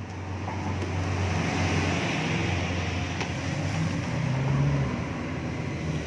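Steady background rumble with a hiss over it, swelling slightly in the middle.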